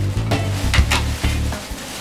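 Thin plastic drawstring bag rustling and crinkling in irregular bursts as it is handled, over steady background music.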